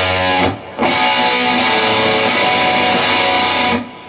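Electric guitar strumming a chord barred at the fourth fret on the D, G and B strings over a descending bass-string melody. The chords ring and are restruck about every 0.7 s, with a short break near half a second in.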